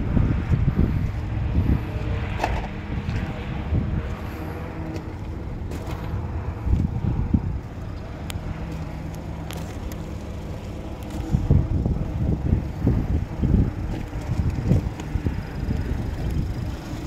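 Steady low engine hum of an idling car, with wind on the microphone and scattered clicks and handling noises that grow louder in the last few seconds.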